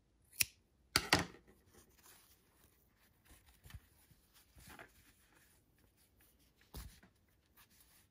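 Scissors snipping through acrylic crochet yarn with a few sharp clicks in the first second or so, then faint rustling of yarn and crocheted fabric being handled, with one more soft click near the end.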